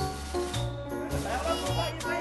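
Background film music with a regular bass line whose notes change about every half second, under sustained higher tones.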